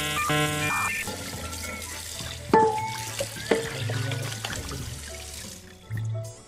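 Kitchen faucet running into the sink as a plate is rinsed, with a few sharp clinks; the water shuts off near the end. Background music plays over it, loudest in the first second.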